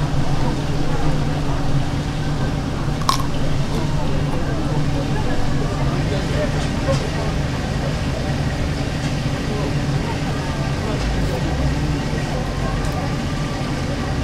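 Indistinct background voices over a steady low hum, with one sharp click about three seconds in.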